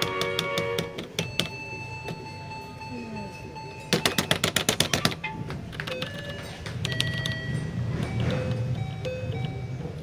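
Electronic beeps and tones from a Smurfs-themed coin-operated fruit slot machine, with a fast run of sharp clicks about four seconds in while the light runs around the symbols, then more short beeping tones.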